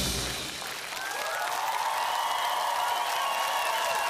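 A drum ensemble's playing cuts off right at the start, and after a brief dip a large studio audience breaks into steady applause and cheering.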